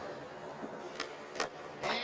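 A skateboard rolling on concrete, a steady wheel noise with a few sharp clicks, one about a second in and another near the end.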